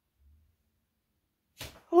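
Near silence for most of the time, then a short sharp noise about one and a half seconds in, and a woman's voice starting to speak just before the end.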